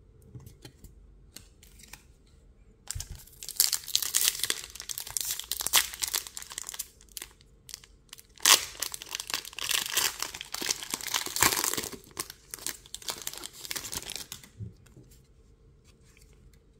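The plastic-foil wrapper of a Pokémon trading card booster pack crinkling and tearing as it is opened by hand, in two long stretches of crackling. The second stretch starts with a sharp tear about halfway through, and a few scattered crinkles follow.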